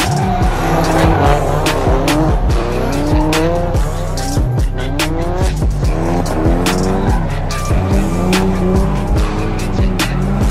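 Drift car engine revving up again and again as it slides, with tyre squeal. Background music with a steady beat runs under it.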